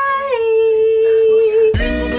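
A woman's voice singing one long held note that steps down slightly in pitch early and then holds steady. Near the end it is cut off by loud Christmas-style intro music with jingle bells.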